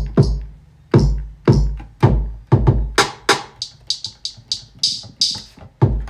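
A sampled drum kit played back through Logic Pro X's Ultrabeat drum synth: deep kick drums with long, booming low tails several times in the first half, sharp hits between them, and a run of bright high hits from about three seconds in.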